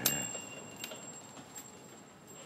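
A small door chime or bell ringing as the entrance door is pushed open. It strikes sharply at the start and fades away over about a second, with a light click near the middle.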